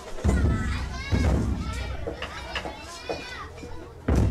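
Children's high voices calling and chattering together at a festival, with two low thuds about a quarter second and a second in.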